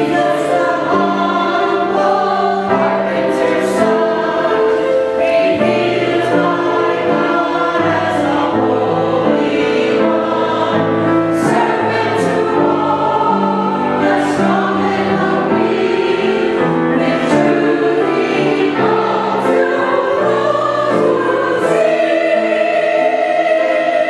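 A mixed church choir of women and men singing in harmony, with held chords that change note every second or so.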